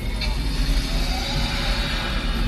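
A steady low rumble with indistinct background voices, the kind of mixed noise a large indoor show arena makes.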